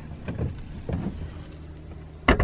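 A steady low hum with a couple of faint knocks as a wooden dinette table top is handled and set into its wall slots.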